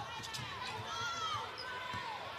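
Basketball being dribbled on a hardwood arena court, with short high squeaks and players' and fans' voices in the background.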